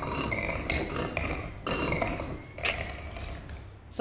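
Kitchen clatter of metal utensils and a mixing bowl clinking and knocking irregularly, with a couple of sharper knocks midway, as shredded chicken is worked in the bowl.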